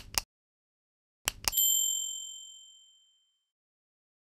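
Subscribe-button animation sound effect: a quick double mouse click at the start and another a little over a second in, then a bright bell ding that rings out and fades over about two seconds.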